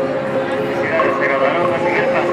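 Indistinct voices talking over steady background music, with a voice coming up more clearly about halfway through.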